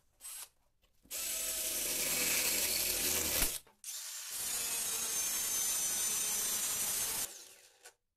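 Angle grinder with an abrasive cutting disc cutting through a rusty steel strip: a high whine with gritty cutting noise. It runs in two long passes with a brief break about halfway, then winds down about seven seconds in.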